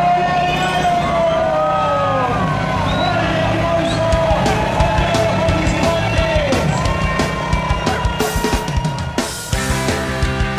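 Several emergency-vehicle sirens wail at once, their pitches sliding up and down over one another, as the race starts. A spatter of sharp cracks grows denser toward the end. Rock music cuts in just before the end.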